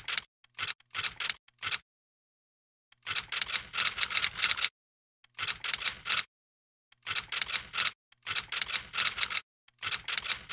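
Typing sound effect: rapid key clicks in bursts of about a second each, with dead silence between the bursts and one longer pause near the start.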